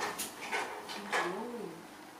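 A baby monkey giving a short whimpering call that rises and falls in pitch, after a few light knocks and rustles of a laptop being handled.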